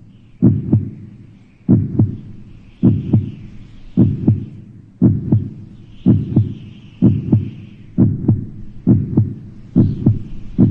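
A slow, steady heartbeat: paired low thumps, lub-dub, about once a second, with a faint airy hiss above it at times.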